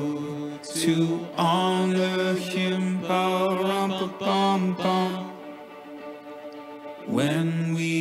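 A group of voices singing long held notes in slow, chant-like phrases with no drums or bass under them. They ease off into a quieter stretch a little past the middle, then come back in near the end.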